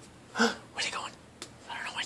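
Soft, whispered human speech in a few short bursts.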